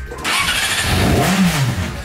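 Yamaha R6 sport bike's inline-four engine starting about a quarter second in, then revved once, its pitch rising and falling back.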